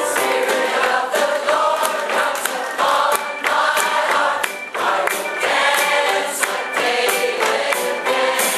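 A mixed choir of women's and men's voices singing together live in an upbeat song, with sharp percussive hits along with the singing.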